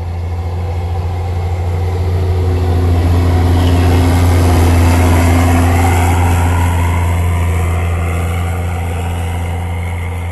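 Snowcat (snow groomer) engine running as it passes close by: a steady low drone that swells to its loudest around the middle, then fades as it moves off.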